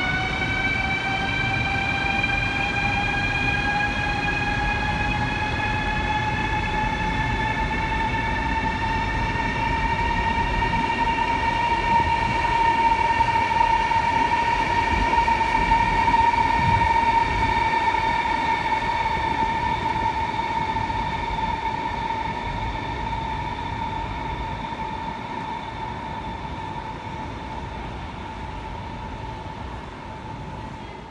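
CRH high-speed electric train moving through a station with a steady motor whine that rises in pitch over the first ten seconds, as the train gathers speed, and then holds. Under it runs a rumble of wheels on rails. The sound is loudest in the middle and fades toward the end.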